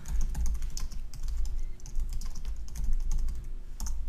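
Typing on a computer keyboard: a line of quick keystrokes, over a steady low hum.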